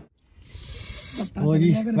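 A brief hissing whoosh, a video-editing transition sound effect, rising out of a moment of silence. About a second and a quarter in, a voice comes in over background music.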